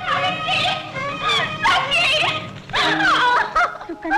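A young woman sobbing and whimpering in fright, in short high cries that waver and break in pitch.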